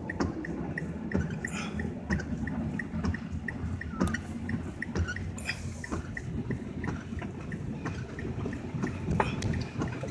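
A car driving slowly through floodwater, heard from inside the cabin: a steady low rumble of engine and tyres with water swishing. A regular light ticking, about three a second, runs over it.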